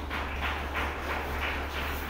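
Laptop keyboard keystrokes as a terminal command is typed and edited, short taps about three a second over a steady low hum from the room's sound system.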